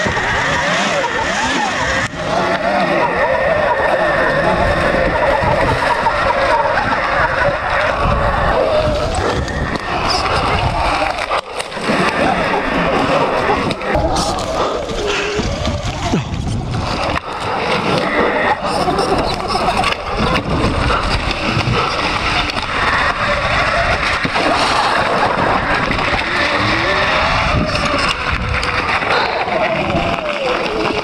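Mountain bike ridden fast down a muddy forest trail: continuous tyre and chassis rattle over rough dirt, with wind rushing over the helmet-mounted camera.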